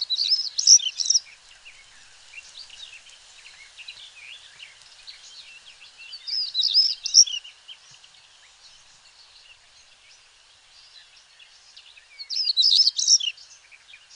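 European stonechat (Schwarzkehlchen) singing: three short, high twittering phrases about six seconds apart, each about a second long and fairly monotonous.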